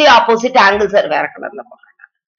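Only speech: a woman talking, trailing off near the end.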